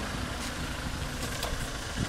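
A van's engine idling steadily.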